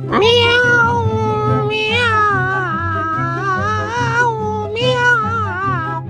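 Domestic cat yowling: one long, drawn-out meow that swoops up at the start and wavers in pitch for about four seconds, then a second, shorter yowl near the end.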